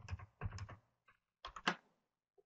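Computer keyboard keys being pressed, in three short runs of clicks with pauses between.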